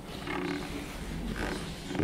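Faint, muffled voice of a listener answering from across the room, well away from the microphone, in two short indistinct bits.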